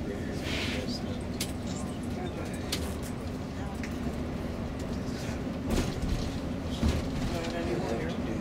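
Road noise inside a coach driving on a motorway: a steady low rumble with scattered light rattles and clicks, and two heavier thumps about six and seven seconds in.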